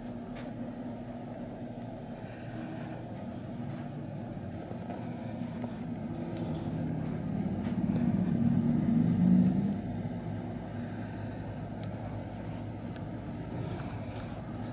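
Low mechanical hum with a few pitched tones. It grows louder over about three seconds in the second half, then drops back suddenly and carries on steadily.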